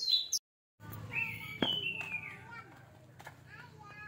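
Outdoor ambience with high chirping bird calls over a low steady hum, and a single sharp crack about a second and a half in. A brief high sound at the very start cuts off abruptly into a moment of silence.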